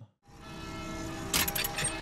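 Old-film style transition sound effect: a steady hum of several held tones fades in after a moment of silence. About halfway through, a burst of dense crackling clicks joins it, like film running through a projector.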